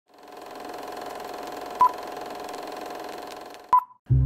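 Title-card sound effect: a steady electronic hum fades in, with two short, sharp beeps about two seconds apart, the second just before the sound cuts off.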